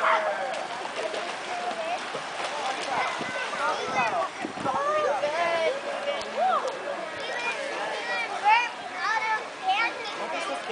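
Overlapping voices, many of them children's, chattering and calling over the steady splashing of water in a swimming pool.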